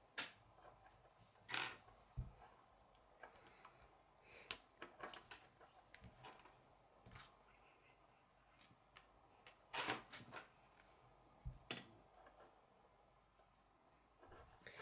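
Faint, scattered clicks and rattles of K'nex plastic gear pieces and rods being handled and pushed together, with a few sharper snaps, the loudest about a second and a half in and again near ten seconds.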